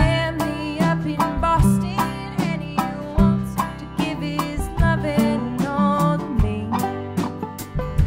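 Live Appalachian-roots string band playing: a woman singing lead over acoustic guitar, banjo, upright bass and drums.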